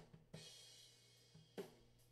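Multitrack acoustic drum kit recording playing back quietly, mostly through the overhead microphones, with the kick drum channel faintly mixed in under them. About a third of a second in, a hit is followed by a cymbal ringing out for about a second, then a few more scattered drum hits.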